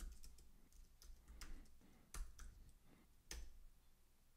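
Faint typing on a computer keyboard: a scattered handful of soft key clicks, the last one a little over three seconds in.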